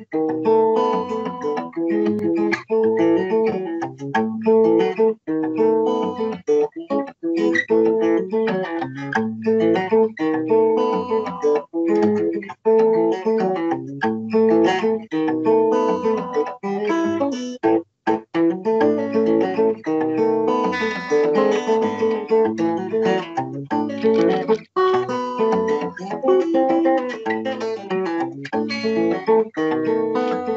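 Solo fingerstyle acoustic guitar played continuously, picked bass notes under chords and melody in a syncopated rhythm, with a brief break about eighteen seconds in. Heard through a video call's audio.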